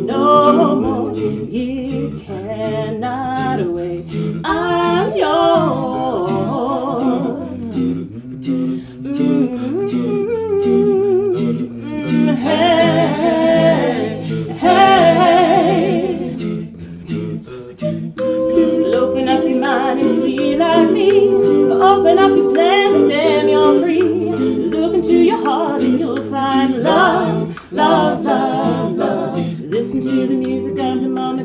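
An a cappella group of mixed male and female voices singing a song in harmony, with no instruments. Vocal percussion keeps a steady clicking beat underneath.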